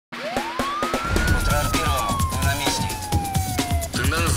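Theme music with a regular beat and heavy bass. Over it a single siren wail rises for about a second, then falls slowly and cuts off just before the end.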